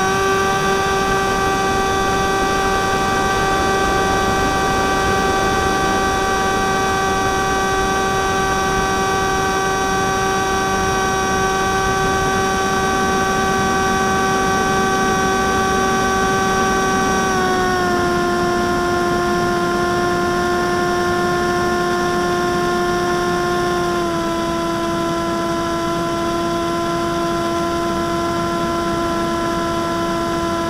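Electric motor and propeller of an FPV Skywalker model plane heard from its onboard camera: a steady high whine with overtones over a rush of air noise. The whine steps down in pitch twice, a little past halfway and again about four-fifths of the way through, as the motor slows.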